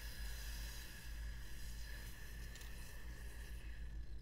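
A long, slow breath through pursed lips, heard as a soft, steady hiss that stops near the end. It is the paced breath of a qigong hand-rotation exercise.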